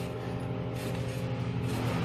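A steady low engine-like hum, with two soft bounces of a boy landing a flip on a trampoline mat, about a second in and near the end.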